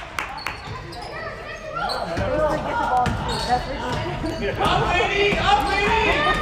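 Basketball being dribbled and bouncing on a hardwood gym court during play, a scatter of short knocks, with voices calling around it.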